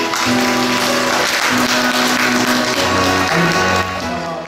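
Recorded backing music playing the closing bars of a song, with audience applause over it.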